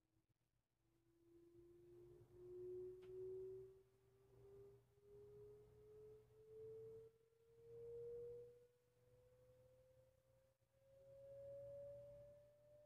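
Sine-wave test sweep played through an exciter driving an MDF speaker cabinet: one faint, steady tone slowly rising in pitch, from about 320 Hz to about 550 Hz. It swells louder several times from around 400 Hz up, where the cabinet panels resonate, which the owner takes for the MDF's natural resonance.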